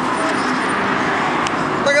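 Steady urban road-traffic noise, an even wash of sound from passing vehicles, with a faint click about one and a half seconds in.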